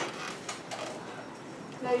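Dry-erase markers drawing on a whiteboard, faint short scraping strokes over room noise, before a boy starts speaking near the end.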